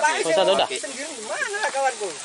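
People talking in short bursts over a steady hiss.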